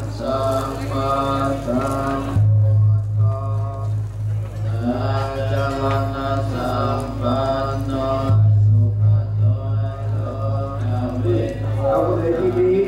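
Chanting mixed with music, held pitched tones over a low, evenly pulsing drone that grows louder twice for a couple of seconds each time.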